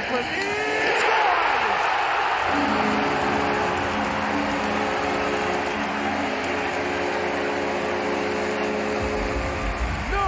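Ice hockey arena crowd cheering loudly after a goal. Then, about two and a half seconds in, the arena goal horn sounds: a chord of steady low tones held for about seven seconds over the cheering.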